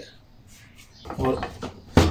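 Plastic push-down vegetable chopper slammed shut at the very end, one sharp snap as a potato is forced through its fry-cutting blade grid.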